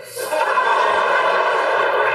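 Large audience applauding and laughing, a steady wash of crowd noise that swells in just after the start.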